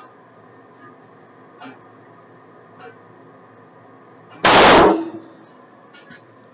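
A single shot from a SIG P226 Elite pistol firing a .40 S&W 180-grain Federal HST round, about four and a half seconds in, very loud and sharp with a short ringing tail. A few faint clicks come before it.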